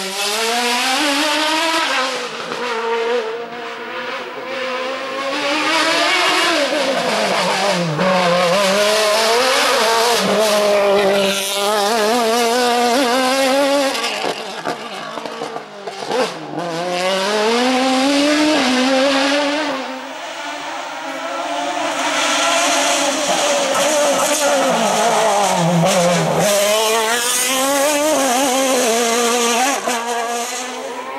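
An open-cockpit sports prototype race car's engine revving hard, its pitch climbing and dropping several times as the driver accelerates, shifts and brakes through the slalom turns and cone chicanes.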